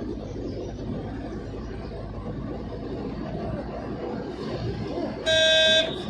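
Steady road noise of a moving vehicle, then one short vehicle horn honk a little after five seconds in, lasting about half a second and much louder than the rest.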